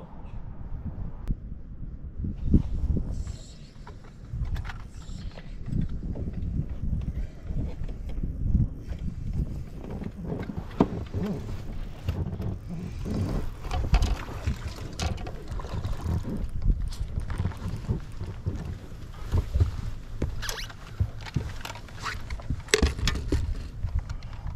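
Water slapping against a bass boat's hull, with wind on the microphone. Scattered knocks and splashes come as a bass is reeled in and landed on the deck.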